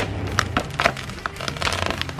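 Trunk of a large, just-cut walnut tree cracking and splintering as it starts to go over: an irregular run of sharp snaps and cracks over a steady low hum.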